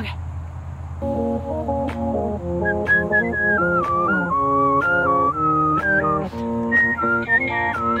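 A woman whistling a melody along with a recorded song. The song's backing music comes in about a second in, and her clear, high whistle joins the tune at about three seconds.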